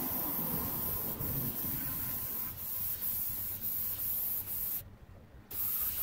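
Steady hiss of a gravity-feed compressed-air spray gun spraying paint onto the body panels. The hiss cuts out suddenly for about half a second near the end, then starts again.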